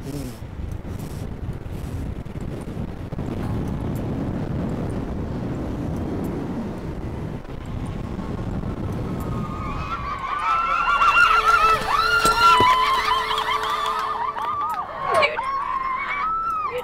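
Wind rushing over the microphone during a wire-guided free fall from a tall tower, a rough low rushing noise. From about ten seconds in, loud high-pitched shrieks and whoops.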